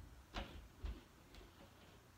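Two faint knocks about half a second apart, each a dull thud with a click on top, followed by a fainter click.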